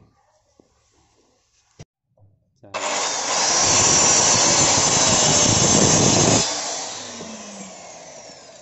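Handheld electric hand cutter with a freshly resharpened carbide-tipped saw blade starting up about three seconds in and cutting through a wooden plank for about three and a half seconds, then dropping to a lower level. The blade is now cutting cleanly instead of smoking.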